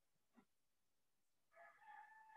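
Near silence, with a faint click about half a second in; near the end a faint, drawn-out animal call begins.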